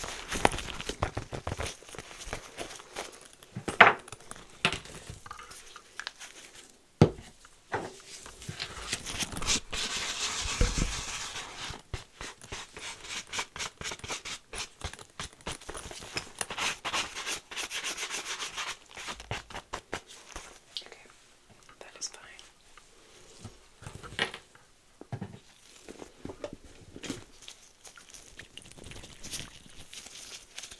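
Gloved hands handling and opening a small zippered pouch close to the microphone: rustling, rubbing and crinkling with scattered sharp taps and knocks, and louder stretches of rustling about ten and seventeen seconds in.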